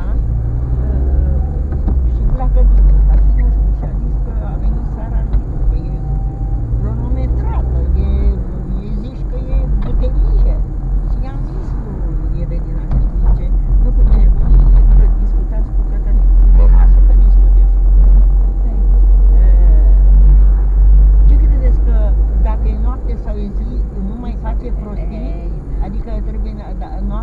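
Car interior while driving: a steady low rumble of engine and road noise, swelling louder for several seconds in the second half.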